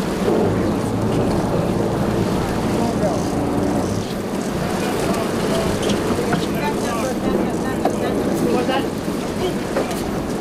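Steady low drone of a sportfishing boat's engines idling, with wind buffeting the microphone.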